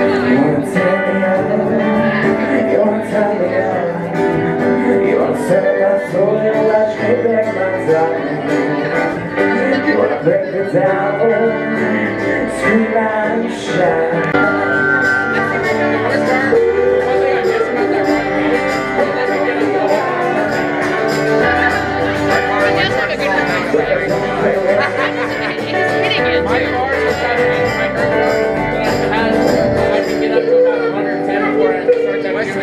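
Live band playing a song in a small club, with a male singer on a microphone over guitar and keyboard, heard loud and steady from within the audience.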